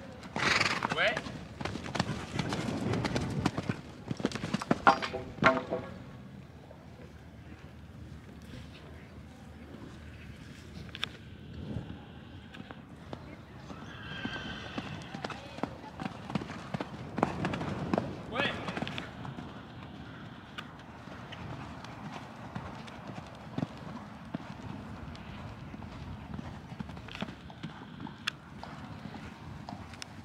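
Hoofbeats of a ridden horse cantering on sand, a run of soft impacts under an occasional voice.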